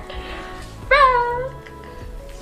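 Soft background music, with one short high-pitched cry about a second in that rises and then falls in pitch, meow-like.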